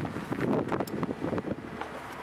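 Wind buffeting the microphone, an uneven rumbling rush broken by short sharp clicks.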